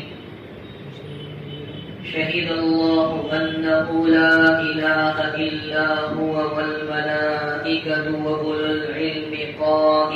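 A man's voice reciting in a slow, melodic chant with long held notes, beginning about two seconds in after a brief lull: the chanted Arabic recitation that opens an Islamic sermon.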